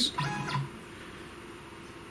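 CNC router stepper motor driving the carriage along its lead screw for a 5 mm test jog: a short, steady-pitched whine lasting about half a second near the start.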